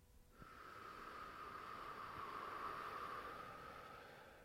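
A person's long, slow breath out, starting suddenly, swelling and then fading over about three and a half seconds.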